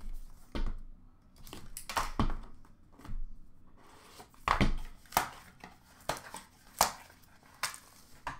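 Hands handling and opening a cardboard hockey-card hobby box: irregular knocks, taps and rustles of cardboard, with several sharper knocks in the second half.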